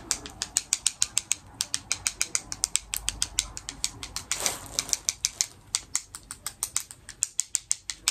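Rapid crisp clicking, about six to eight clicks a second, from a small object worked between the fingertips close to the microphone.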